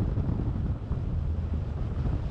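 A car driving on a gravel road: a steady low rumble of tyres and wind, with wind buffeting the microphone.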